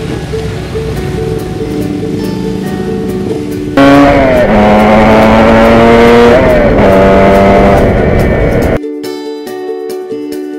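Motorcycle engine sound from riding clips mixed over plucked-string background music. About four seconds in the engine gets much louder, its pitch dropping and rising as it revs, then it cuts off suddenly near the end, leaving only the music.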